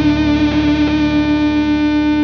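Rock band holding one long chord near the song's end: a distorted electric guitar sustains steadily with no beat.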